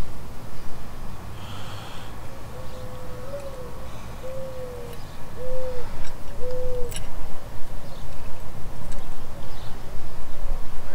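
A bird calling: a run of low hooting notes, one longer note that rises at its end followed by three shorter ones about a second apart.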